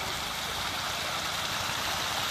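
A large shoal of pangasius catfish thrashing at the pond surface in a feeding frenzy, a dense, steady rushing splash of water.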